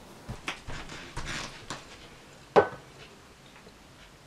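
Light footsteps and soft knocks on a wooden floor, then one sharp clink of a hard object set down, with a brief high ring, about two and a half seconds in.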